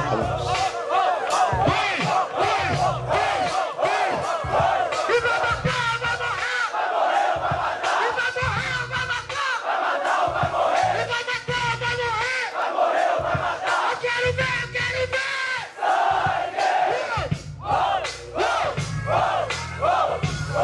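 Rap battle crowd shouting and cheering together in many overlapping voices over a pulsing hip-hop beat.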